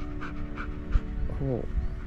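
Golden retriever panting in quick, even breaths over soft background music holding a steady chord. A single dull thump comes about a second in.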